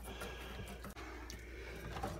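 Faint handling sounds as a kitchen faucet's sprayer hose is worked loose: a few soft clicks and rustles over a low steady hum.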